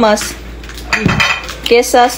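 Cutlery and dishware clinking about halfway through, between a voice trailing off at the start and starting again near the end.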